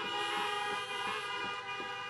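Many car horns honking at once in a steady, overlapping chorus: a drive-in rally audience applauding with their horns.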